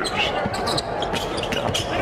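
A basketball being dribbled on a hardwood court, bouncing repeatedly.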